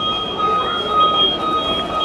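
A high, steady squeal at two pitches that wavers in loudness, over the background noise of a busy shop.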